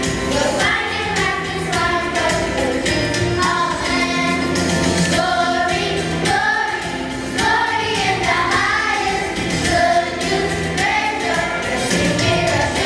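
Children's choir singing into microphones over instrumental accompaniment with steady bass notes.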